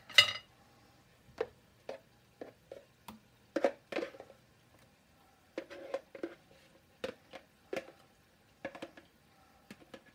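A utensil clacking and scraping against a container as aioli dip is scraped out of it: about a dozen short, irregular knocks, the loudest right at the start.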